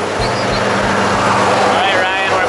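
Loud steady drone of the jump plane's engine and propeller inside the cabin, with voices talking over it.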